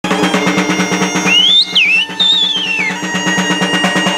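Asturian bagpipe (gaita asturiana) and rope-tensioned side drum playing together: a steady bagpipe drone under a high chanter melody, with the drum beaten in a fast, even roll.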